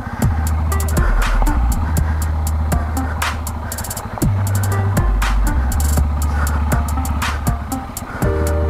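Electronic background music with a deep bass line and a steady beat, with a falling swoop about every four seconds.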